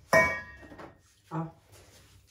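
A sharp knock on a stainless-steel mixing bowl, which rings briefly and fades over about half a second. A short vocal sound follows about a second later.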